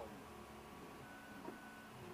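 Vector 3 3D printer's stepper motors whining faintly as the print head moves, the thin whine jumping to a higher pitch about halfway through, with a short tick shortly after.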